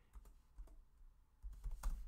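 Computer keyboard typing: a few faint, scattered keystrokes, with a quicker run of them near the end.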